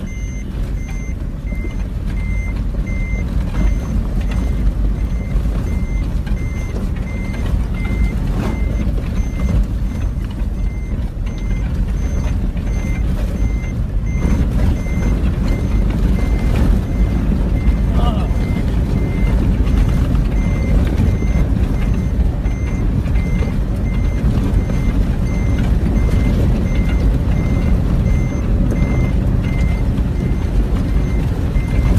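Off-road vehicle driving fast over rough desert ground: a loud, dense rumble of engine, tyres and wind. Over it, an electronic warning beep repeats about twice a second.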